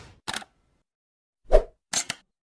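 Sound effects for an animated logo intro: a brief hissing tick, then a loud pop about a second and a half in, and a sharp click at the end.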